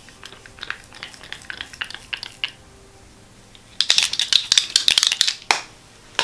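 Faint scattered clicks and taps of things being handled close to the microphone, then, about four seconds in, nearly two seconds of loud dense rustling and crackling that ends in one sharp crack.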